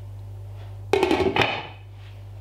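A glass pot lid set down onto an aluminium cooking pot, clattering against the rim in a quick cluster of knocks with a brief ring, about a second in. A steady low hum runs underneath.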